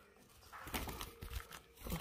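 Faint rustling and light scattered clicks as a hand handles a red canary hen on her fibre nest, lifting her to uncover a freshly laid egg.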